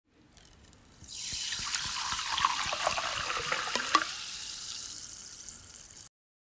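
Water poured into a glass: a splashing stream starts about a second in, with sharp drips and splashes, and fades away over the last two seconds.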